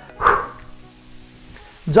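Quiet background music, with one short, sharp exhale about a quarter second in, the breath a boxer pushes out while throwing a jab.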